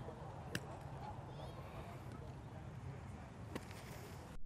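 Quiet driving-range background: a steady low rumble and hiss, with two faint sharp clicks of distant club-on-ball strikes, about half a second in and near the end.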